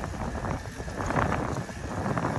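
Wind buffeting the microphone while an e-bike rolls along a paved path, with tyre rumble and scattered light clicks and rattles.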